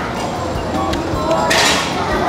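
Eating sounds: a short slurping hiss about one and a half seconds in, as a mouthful of two soup dumplings is bitten into. Steady restaurant chatter and faint music run underneath.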